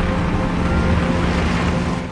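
Steady, loud rumble of a large multi-wheeled armored transport truck rolling over a dirt road, with a low engine hum underneath.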